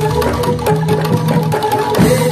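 Live Javanese traditional dance music: a kendang barrel drum played by hand in quick, busy strokes over steady ringing tones from the rest of the ensemble.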